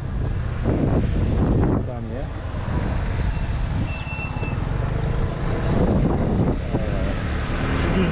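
Revolt Volta RS7's 125cc GY6-type single-cylinder four-stroke scooter engine running under way, with wind noise on the helmet microphone. The engine and wind ease off as the scooter slows for a turn, then build again as it picks up speed.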